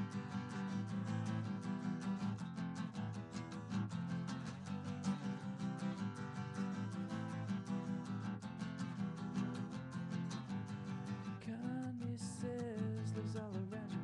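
Acoustic guitar strummed steadily in a quick, even rhythm during an instrumental passage of a song. A singing voice comes in near the end.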